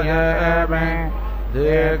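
Male voice chanting Sanskrit mantras in a sustained, sing-song recitation, with the pitch dipping and rising again about one and a half seconds in. A steady low hum runs underneath.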